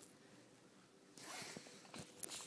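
Near silence, then a short rasping scrape starting just past a second in and lasting under a second.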